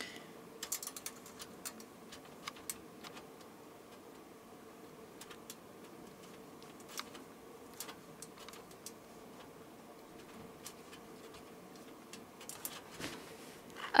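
Faint, scattered small clicks and ticks of beads knocking together as a strung bead necklace is handled, in small clusters with short gaps, over a faint steady hum.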